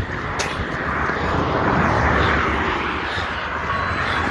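Road traffic noise: a vehicle's tyres and engine on the road, swelling as it passes about halfway through, over a steady low rumble.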